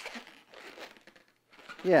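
Faint, irregular rubbing and crinkling of a latex twisting balloon being bent and shaped by hand, dying away after about a second.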